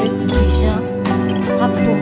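Background music with a steady bass line and a gliding melody; over it, a metal spoon clinks against a ceramic bowl while stirring tomato juice.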